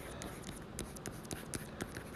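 Stylus writing on a tablet screen: a string of quiet, irregular taps and short scratches as the letters are written.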